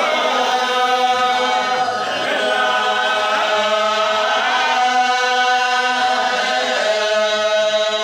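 A group of voices chanting together in long, held notes that shift in pitch every second or two.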